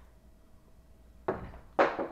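A candy bar's plastic wrapper being torn open: quiet at first, then two sudden loud tearing, rustling bursts, the second about half a second after the first and louder.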